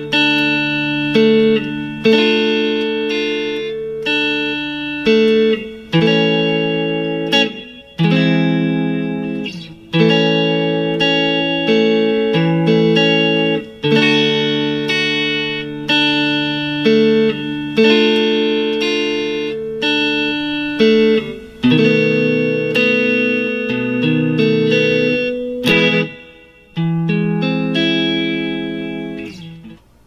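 Clean electric guitar, a Stratocaster, playing a chord progression (D, D minor, A, E augmented, B7): chords struck about every two seconds and left to ring, with notes from each chord picked out between the strums.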